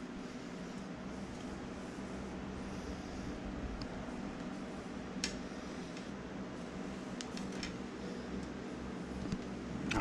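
Steady low hum of a fan or similar machine, with a few faint ticks in the middle as hands work braided fishing line into half hitches.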